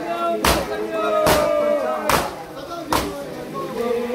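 Matam: a crowd of men slapping their bare chests with open hands in unison, four loud strikes in a steady rhythm about once every 0.8 seconds, over voices chanting a nauha.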